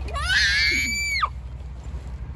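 A young girl's high-pitched playful shriek lasting about a second, rising at first, held, then dropping off sharply.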